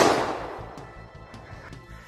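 The dying tail of a .380 blank fired from a Colt Single Action Army-style blank-firing revolver: the report echoes off the trees and fades away over about a second, followed by a few faint clicks.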